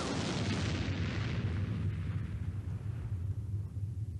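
An explosion-like boom sound effect: a sudden blast whose hiss fades over about two seconds while a deep rumble carries on.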